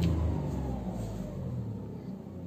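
Tata Tiago's three-cylinder engine heard from inside the cabin, its revs falling away from about 4000 rpm back toward idle after being revved. The engine note drops in pitch and gets steadily quieter.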